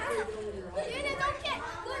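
Background chatter of children and adults in a swimming pool, with children's voices calling and talking.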